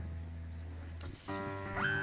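A live worship band starting a song: a low held bass note, then a little over a second in, piano and guitar chords come in with held notes and one note sliding upward near the end.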